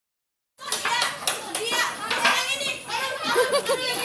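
A group of children chattering and calling out, many high voices overlapping, starting about half a second in.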